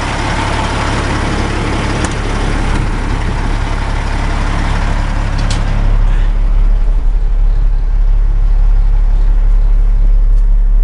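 Caterpillar C15 diesel engine of a Peterbilt 386 idling steadily with a deep, even drone. Partway through it turns duller and bassier as it is heard from inside the cab. A couple of sharp clicks are heard along the way.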